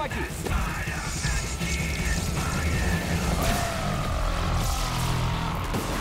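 Film soundtrack: dramatic score mixed with heavy low rumbling sound effects, with a thin whine that slowly falls in pitch over the last few seconds.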